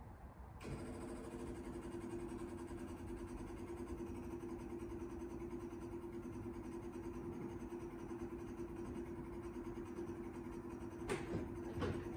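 Twin electric fuel pumps of an FV432 Mk1 armoured personnel carrier switching on with the ignition about half a second in, then running steadily and faintly as they prime the fuel system of the cold Rolls-Royce B81 straight-eight before starting. A few short knocks come near the end.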